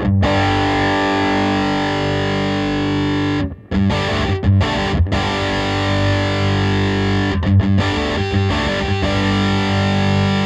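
Electric guitar played through a Mesa/Boogie Throttle Box high-gain distortion pedal on its low-gain side. A distorted chord rings out and breaks off for a few quick staccato strikes a little over three seconds in, then rings again. Meanwhile the pedal's Mid Cut knob is turned, sweeping the midrange of the tone.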